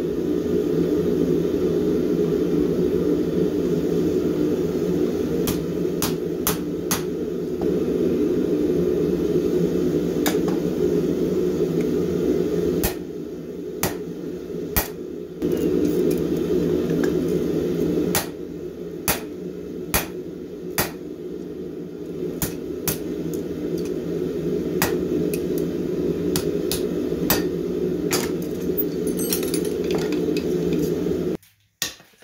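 Hammer blows ringing on hot steel tong jaws against an anvil, single strikes spaced unevenly, a second or more apart and closer together near the end, as the flat-nib jaws are set to grip bar stock. A steady low roar from the forge runs underneath.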